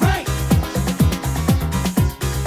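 Early-1990s Italian dance music from a DJ-mixed compilation: a steady kick-drum beat about two beats a second under a pulsing bassline, with a short synth sweep right at the start.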